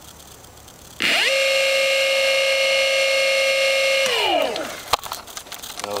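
Golden Motor BLT-650 brushless hub motor spinning up with no load on 20S (about 76 V). About a second in, a whine rises sharply in pitch, then holds steady and high for about three seconds. The pitch then falls away as the motor coasts down, and a single click follows near the end.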